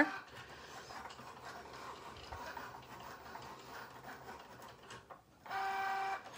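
Cricut Joy cutting machine cutting leaf shapes from cardstock: a faint, steady whir of its carriage and rollers, then a brief, louder, steady whine near the end.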